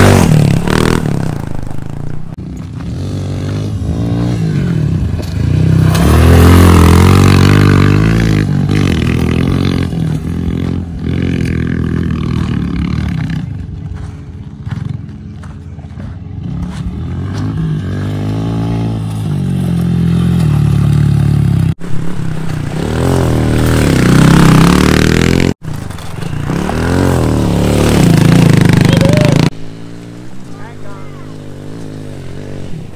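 Honda CRF110 pit bike's small single-cylinder four-stroke engine revving up and down repeatedly while being ridden on dirt and up a hill.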